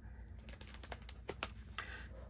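A scrapbook album page being turned by hand: a quick run of light clicks and handling sounds as the page is lifted and laid over.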